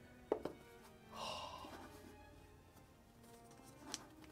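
Cardboard phone-box lid set down on a wooden table with a short thunk a third of a second in, then a brief papery rustle of cardboard and a light click near the end, all faint over quiet background music.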